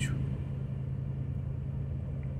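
Steady low hum of a car engine idling, heard from inside the cabin while the car is stopped.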